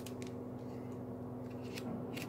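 Faint plastic handling sounds of a trading card in a rigid toploader and penny sleeve, with a couple of brief clicks just after the start and near the end, over a steady low hum.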